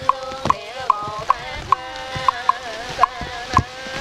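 Buddhist chanting held on sustained, slowly shifting notes, kept in time by a wooden fish (mõ) knocked about twice a second, over a faint background hiss.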